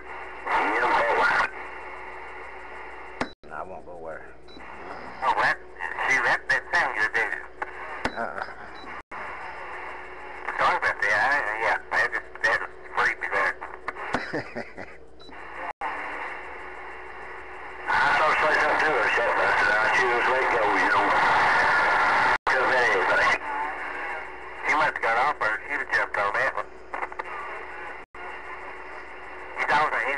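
CB radio receiver's speaker playing distant skip stations: garbled, band-limited voices that break in and out through static, over a steady low tone. A louder, denser burst of talk and noise runs from about eighteen to twenty-three seconds in.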